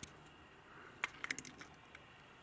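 A quick run of sharp clicks and taps about a second in, over a faint steady background.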